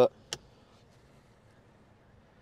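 A single short plastic click from the cap of a car's 12-volt power outlet being flipped by a finger, followed by near-silent cabin room tone.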